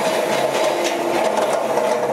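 Steel-mesh forklift work basket dragged across paving: a continuous metallic scraping and rattling that starts just before and stops just after.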